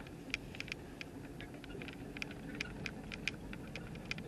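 Cabin noise of a car rolling slowly: a steady low engine and road rumble, with a dozen or so light, irregular clicks and ticks over it.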